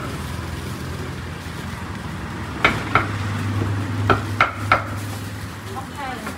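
Knife striking a wooden cutting board while slicing grilled pork: a few sharp knocks in two small clusters, over a steady low hum.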